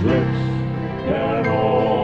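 Southern gospel music: a male vocal quartet singing sustained chords in harmony over instrumental accompaniment.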